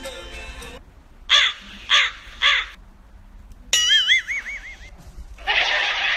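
A crow cawing three times in quick succession, the classic sound effect laid over an awkward moment. It is followed by a tone that wobbles up and down in pitch for about a second, then a burst of hiss near the end.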